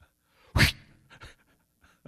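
A single short, loud puff of breath close to the microphone about half a second in, followed by a few faint breaths and mouth clicks.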